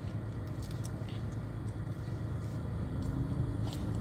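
Steady low rumble inside a car cabin with the engine running, with a few faint clicks.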